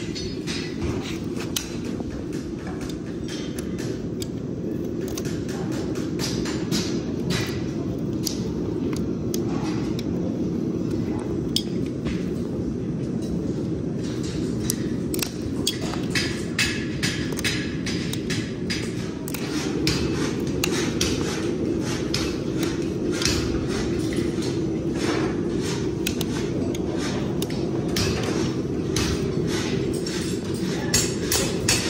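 Steel hoof nippers biting and snapping through the overgrown wall of a pony's hoof: a rapid, uneven run of sharp cracks and clicks, over a steady low hum.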